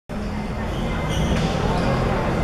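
Voices and general noise echoing in a sports hall.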